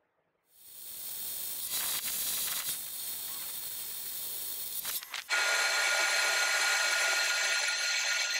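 Metal lathe turning a cast iron chuck back plate, the cutting tool on the spinning face: a steady machine whine with several held tones over a hiss. It starts about half a second in, breaks off briefly about five seconds in and comes back louder.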